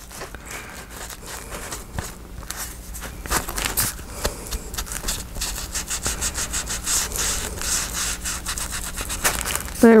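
Ink blending tool scrubbing over paper edges in quick, repeated rough strokes.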